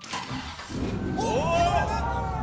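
Recorded car engine starting and revving, played over the studio speakers as the intro of the cued song. It starts abruptly with a deep rumble, and the pitch rises and falls from about half a second in.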